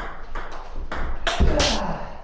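Table tennis rally: a celluloid-sounding plastic ball clicking off rubber-faced paddles and the table in quick succession, roughly every half second, with the loudest hit about one and a half seconds in.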